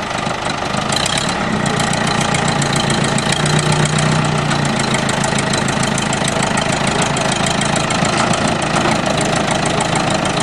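Farm tractor's engine running with a fast, even beat while its front-end loader lifts the front of a car; the engine note grows stronger for a second or so about three seconds in.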